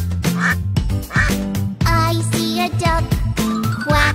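Children's song with a cheerful music backing in which a child's voice sings 'quack, quack, quack', imitating a duck's quacking.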